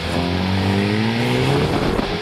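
Hyundai i30 N's turbocharged four-cylinder engine accelerating hard from a standing start. It revs up steadily, then the pitch drops near the end as it shifts up a gear.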